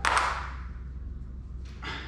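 Brief scraping and rustling handling noises as small metal bicycle parts are picked up from the floor and fitted at the rear hub: one louder scrape at the start that fades quickly, and a shorter one near the end.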